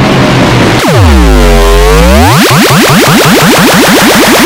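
Heavily distorted, very loud logo-jingle audio. Harsh, noisy music gives way about a second in to a tone that plunges deep in pitch, then glides steadily back up.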